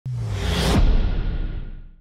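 Intro sound effect: a swelling whoosh that cuts off sharply just under a second in, over a deep low boom with a musical drone that fades away.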